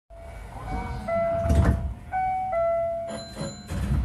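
Hankyu train running through an underground section: a low rumble with several sharp rail clacks. Under it, a short tune of held notes alternating between two pitches.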